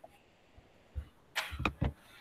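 Near quiet broken by a few short knocks or clicks: one about a second in, then three close together near the end.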